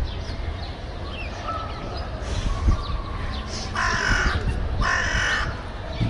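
Two harsh, drawn-out bird calls, about four and five seconds in, with faint high peeps scattered between them.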